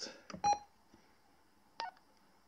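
Short electronic key beeps from a two-way radio: one about half a second in and another near the end.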